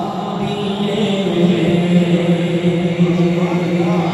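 A man singing a naat, an Urdu devotional hymn to the Prophet Muhammad, unaccompanied into a microphone. He holds long, drawn-out notes with slow shifts in pitch.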